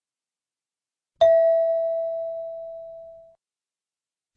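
A single bell-like chime about a second in, one clear tone that fades away over about two seconds: the cue tone of a listening-test recording, marking the move to the next question.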